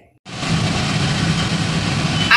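Butter and oil sizzling in a wok on the stove: a steady hiss with a low steady hum underneath, starting about a quarter second in.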